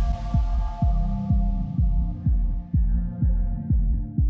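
Electronic background music: a steady bass kick-drum beat about twice a second under sustained synth tones, with a cymbal crash fading out over the first few seconds.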